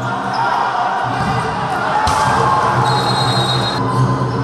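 Futsal match sound in an indoor hall: a ball kicked sharply about two seconds in, over crowd noise and steady background music. A brief high steady tone sounds near the end.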